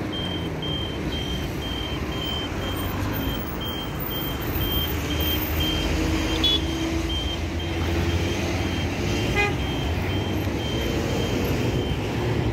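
Pedestrian crossing signal beeping: a short high beep repeated evenly, about twice a second, over the steady rumble of passing street traffic.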